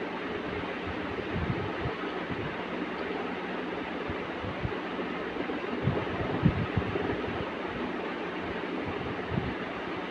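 Steady rushing background noise with a faint low hum, broken by a few soft low thumps as hands handle and smooth cloth on a carpet. The loudest thump comes about six and a half seconds in.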